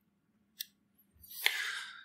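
A quiet mouth click about half a second in, then a short breathy intake of breath close to the lectern microphone near the end, over a faint low hum.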